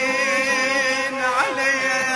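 Background music: a wavering chanted vocal line in Middle Eastern style over a steady held drone.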